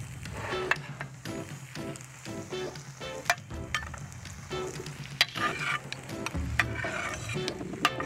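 Grilled vegetables and chickpeas being tipped into a steel paella pan of hot rice over a wood fire and pushed around with a metal spatula: sizzling, with scraping and scattered sharp clinks of metal on the pan. Background music plays underneath.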